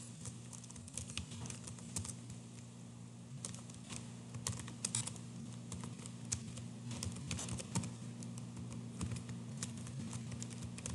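Typing on a computer keyboard: an irregular run of key clicks, some louder than others, over a steady low hum.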